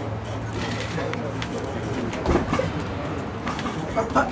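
Gym room sound: indistinct background voices over a steady low hum, with a few short sharp sounds and a louder voice-like sound about two seconds in.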